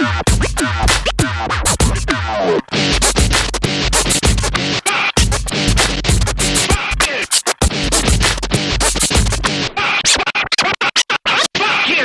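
Vinyl record being scratched back and forth on a turntable over a hip hop beat, with the crossfader cutting the sound in and out. In the last two seconds the scratches are chopped into quick stuttering cuts.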